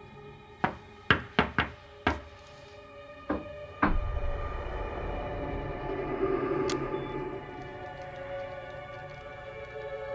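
About seven sharp, unevenly spaced knocks over a quiet music bed, followed at about four seconds by a deep hit that swells into a low, sustained drone of horror-trailer score.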